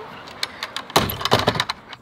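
Wooden stairs being pulled up onto a truck camper's porch, clattering: a few light clicks, then a burst of knocks and rattles about a second in.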